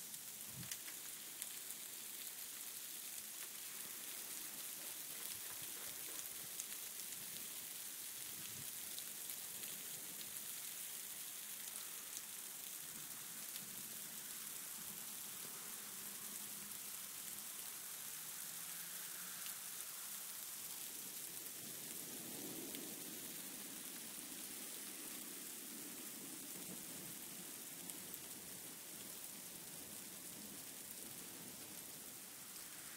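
Freezing rain mixed with small hail coming down steadily: a continuous hiss sprinkled with fine ticks of drops and pellets striking.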